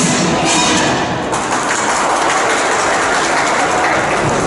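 The routine's music ends at the start, then an audience applauds with steady clapping.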